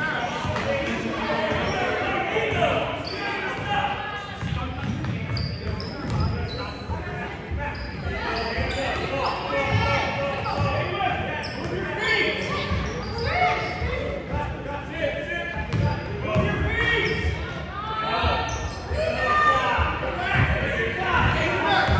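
Basketball dribbled on a hardwood gym floor, with repeated bouncing thumps, amid players' and spectators' voices echoing in a large gym.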